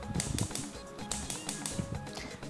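Gas hob igniter clicking in quick succession as the burner knob is turned to light the flame, over background music.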